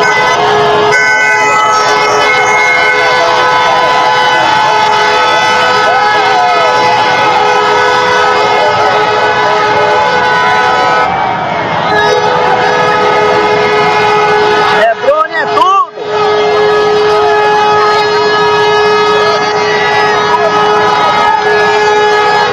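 Several vehicle horns held in long, steady, continuous honks over crowd voices, with a short break in the sound about fifteen seconds in.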